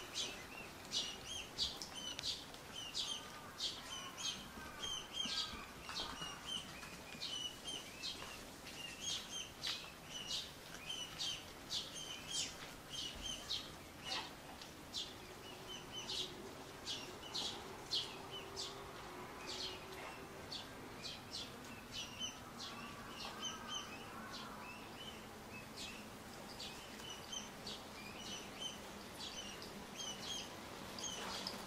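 Bird chirping: an unbroken run of short, high-pitched chirps, roughly two a second, over faint outdoor background noise.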